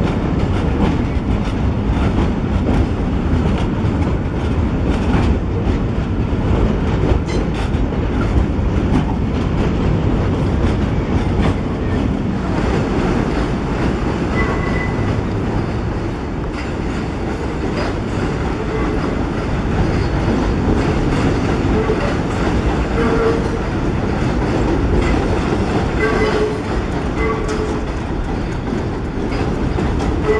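1920s BMT Standard and D-type Triplex subway cars running on elevated track: a steady rumble of wheels and motors with rail clatter. Short high wheel squeals come a few times in the second half as the train takes the curves.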